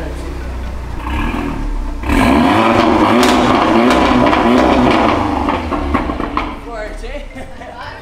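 Audi TT roadster's engine idling, then revved hard about two seconds in. It is held high for about three seconds before dropping back toward idle.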